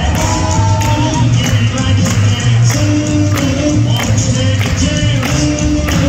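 Upbeat boogie woogie dance music with a steady beat.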